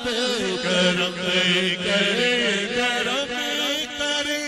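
Men's voices crying out in long, wavering, drawn-out tones, several overlapping, as in a tearful chanted supplication with weeping worshippers.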